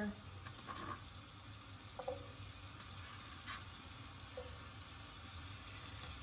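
Chopped onion frying gently in melted butter in a skillet, a faint steady sizzle, with a few light scrapes and taps as a spoon stirs it around the pan.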